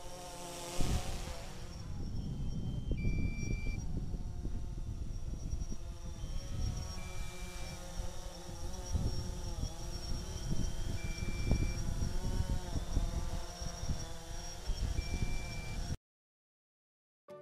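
DJI Phantom 3 Standard quadcopter's propellers humming, the pitch wavering as the motors adjust while it descends to land, with wind rumbling on the microphone. A short beep sounds about every four seconds, which fits the low-battery warning that has come up.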